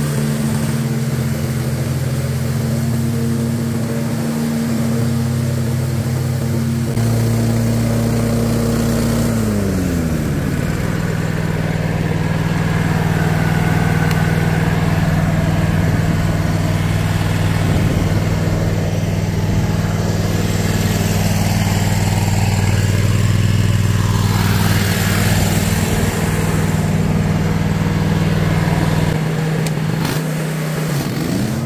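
Toro Grandstand stand-on mower's engine running steadily; about ten seconds in its pitch drops and it settles at a lower, steady speed.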